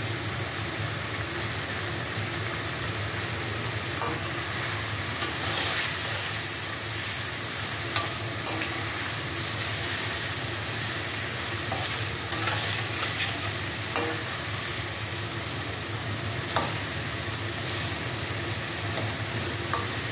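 Goat-meat curry frying in an iron karahi, a steady sizzle as it is stirred and turned with a metal spatula. The spatula clicks against the pan now and then.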